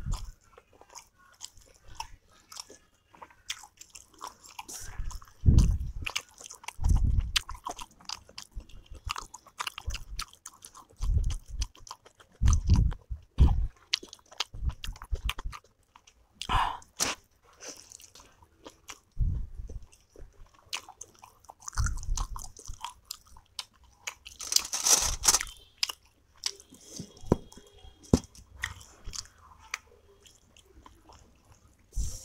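Close-miked chewing of soft steamed momos dipped in tomato chutney: wet mouth clicks and smacks with repeated soft chews. There is one louder, hissier mouth noise about 25 seconds in.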